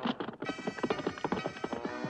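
Cartoon sound effect of a horse's hooves clip-clopping as it sets off at a quick pace, with music coming in under it about half a second in.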